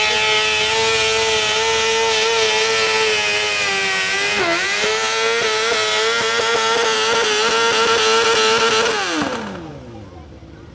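A 750cc-class mini pulling tractor's engine running at full throttle under load as it pulls a weight-transfer sled. The pitch holds steady apart from a brief dip about halfway through. Near the end the engine winds down with a falling pitch as the run ends.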